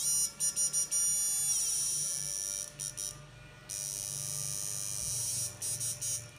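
An 8-FET electronic fish-shocker inverter board running on test with a lamp as its load, giving a steady high-pitched electronic whine over a faint low hum. The whine breaks up in a quick run of stutters near the start and again near the end, and cuts out briefly around three seconds in.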